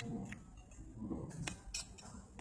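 Glass condiment shaker with a metal cap being worked over a plate, giving a few short, sharp clicks and scrapes.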